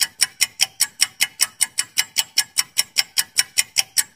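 Clock-ticking sound effect of a quiz countdown timer: fast, even ticks, about five a second, marking the five-second wait before the answer is shown.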